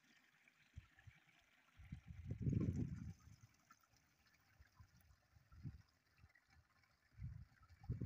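Faint trickle of a small upland stream running among rocks under a grassy bank, with irregular low rumbles that are loudest about two to three seconds in.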